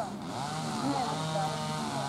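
A small engine running at a steady, even pitch, coming in about half a second in.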